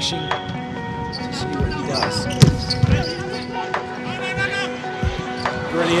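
Volleyball rally: several sharp slaps of the ball being hit, the loudest about two and a half seconds in, over steady background music. Crowd noise swells at the very end.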